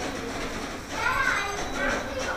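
Indistinct chatter of children and adults in a busy room, a child's high voice rising loudest about a second in.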